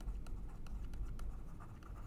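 A stylus scratching and tapping on a pen tablet while a word is handwritten: a run of faint, quick, irregular clicks.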